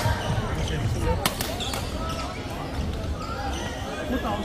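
Reverberant badminton-hall ambience: a background of many voices talking, with occasional sharp knocks from play on the courts, the loudest a little over a second in.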